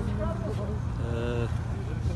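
A man's halting speech with a drawn-out hesitation sound about a second in, over a steady low outdoor rumble.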